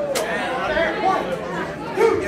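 Crowd chatter in a large hall, with one sharp smack just after the start.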